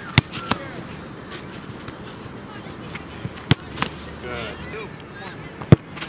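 Sharp thuds of a soccer ball being struck during a goalkeeper drill: two strikes close together at the start, one about midway and the loudest near the end. Faint voices sound in the background.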